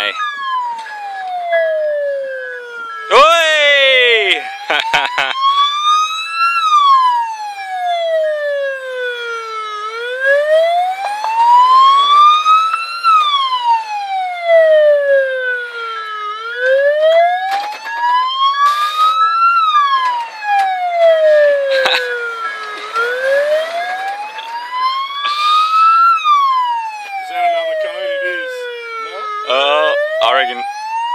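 Ambulance siren in slow wail mode, rising and falling about every six and a half seconds. It breaks into a brief fast warble a few seconds in and again near the end.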